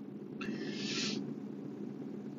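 A short, breathy puff of air from a person, about half a second in, over a steady low hum inside a car.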